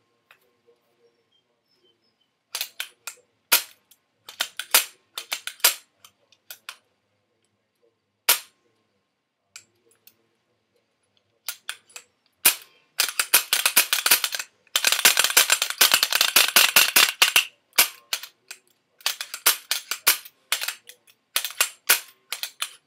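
Sharp clicks and crackles from handling a newly unboxed CCM T2 pump paintball marker and its packaging, coming in short irregular bursts, with a dense run of crackling from about 13 to 17 seconds in.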